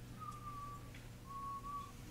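A person whistling two short notes, the first dipping slightly in pitch and the second held level, over a low steady hum.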